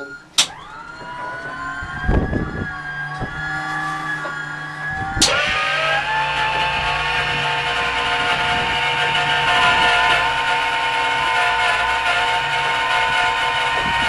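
Starter of a Pratt & Whitney R-4360 Wasp Major radial engine cranking it over with the fuel off: a whine that rises in pitch and levels off, a sharp clunk about five seconds in, then a louder steady whine as the propeller turns. This is a dry crank to check that the blades come round smoothly, with no oil lock in the lower cylinders.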